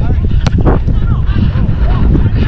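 Wind buffeting and running jolts on a body-worn GoPro microphone as a player dribbles a football, with one sharp kick of the ball about half a second in. Distant shouts from other players break through.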